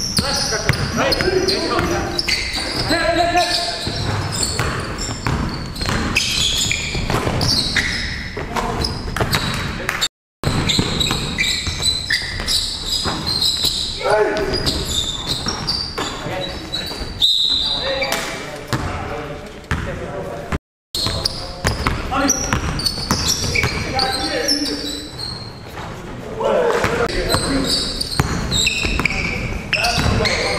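Live game sound of an indoor basketball game: a basketball bouncing on a hardwood gym floor, with players' voices calling out, echoing in a large hall. The sound cuts out briefly twice.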